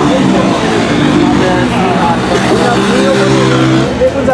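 A voice talking over a loud, steady drone like a running engine.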